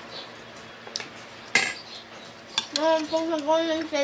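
Metal fork and spoon clinking against a ceramic plate during a meal, a few separate sharp clinks, the loudest about halfway through. A voice comes in near the end.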